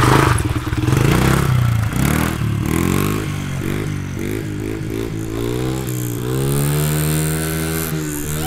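Honda XR70 dirt bike's small four-stroke single-cylinder engine pulling away under throttle. Its pitch climbs and drops several times as it works up through the gears, then climbs once more for longer, growing fainter as the bike rides away.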